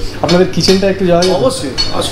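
Cutlery and dishes clinking, with a man talking over them.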